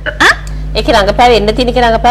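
People talking in conversation, a woman's voice among them, over a steady low hum.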